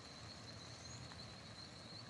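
Faint outdoor ambience: a low, even hiss with a thin, steady high-pitched tone over it.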